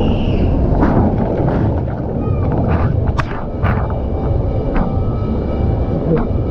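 Rider on a foam mat sliding down a water slide: a loud, steady rush and rumble of water and mat on the slide, broken by several sharp knocks or splashes.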